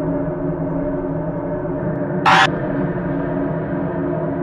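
Dark ambient soundtrack: a steady, gong-like drone of several held low tones. A single short, loud, harsh noise burst cuts across it a little over two seconds in.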